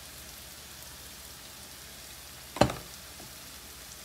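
A pan of peppers sizzling steadily in the background, with one sharp knock about two and a half seconds in.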